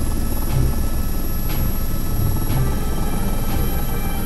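Toy helicopter making a steady, rapid helicopter chopping sound as its rotor spins, with faint ticks about once a second.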